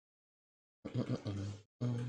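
Speech only: a man's voice in two short utterances, beginning about a second in after dead silence.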